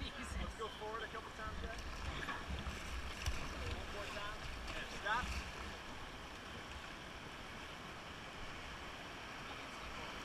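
River water rushing steadily over a rapid, with wind buffeting the microphone in low rumbles during the first half. Faint voices talk over it in the first half.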